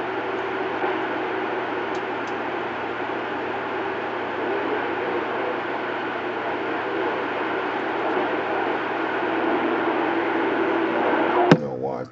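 CB radio receiver giving out steady band static, an even hiss with faint steady tones under it, while no station is talking. Near the end the hiss cuts off suddenly with a click as the set is keyed to transmit.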